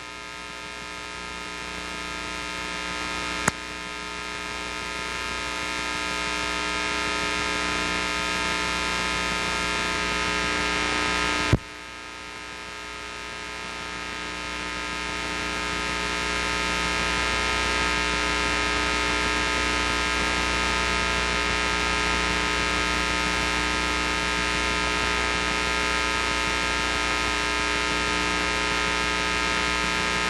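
Steady electrical mains hum with a buzz of many overtones from the sound system, while a clip-on microphone is being fitted. Two sharp clicks, about three and a half and about eleven and a half seconds in; after each the hum drops and slowly swells back.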